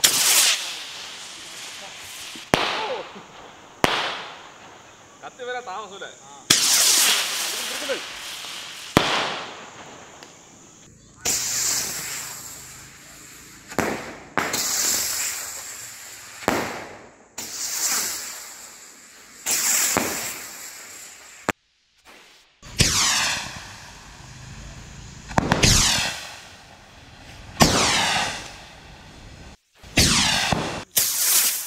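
Diwali sky rockets launching one after another, about a dozen in turn. Each is a sudden hissing whoosh as it ignites and takes off, fading over a second or two, and some carry a falling whistle-like tone.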